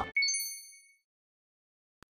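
A single bright ding sound effect, struck once just after the start and fading away within about a second.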